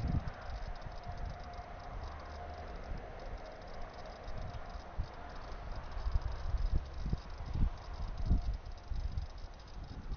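Wind buffeting the microphone in uneven low gusts, with grass rustling. Under it, a faint steady hum from a receding LNER Azuma train fades out about eight seconds in.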